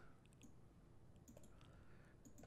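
Near silence with a few faint computer mouse clicks as text is selected and a right-click menu is opened.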